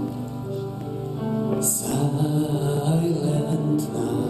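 Slow church music with long held notes and singing, with a short hiss a little under two seconds in.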